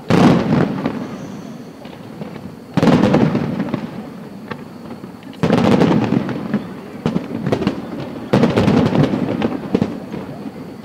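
Aerial fireworks shells bursting in four loud volleys, about every two to three seconds. Each volley opens with sudden bangs and trails off in a dense, fading crackle.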